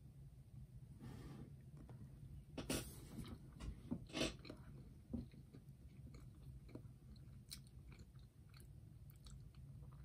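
A person quietly chewing a bite of firm Babybel Light cheese: faint wet mouth sounds with a few louder clicks about three and four seconds in.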